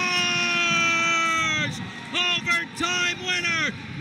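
Play-by-play announcer's excited goal call: one long held shout that breaks off about 1.7 s in, followed by a quick run of further shouted exclamations.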